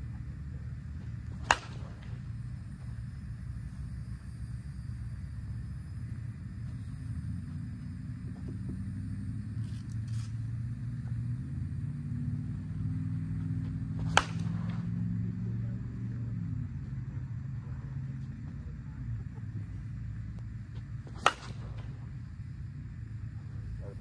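Three single cracks of an Axe Inferno senior slowpitch softball bat hitting pitched softballs, several seconds apart, over a low steady rumble. The bat sounds real weird: its barrel has gone dead with no trampoline left, which the hitters take for a collapsed barrel.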